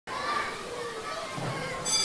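Many children's voices at once, shouting and calling as at play. Just before the end a bright, steady ringing tone comes in.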